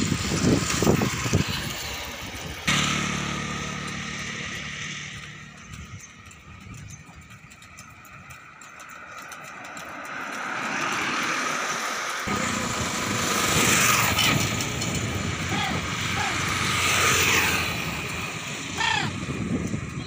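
Motor traffic passing on a highway. A low engine hum starts suddenly about three seconds in and fades away. Later, vehicles swell and fade as they go by, twice.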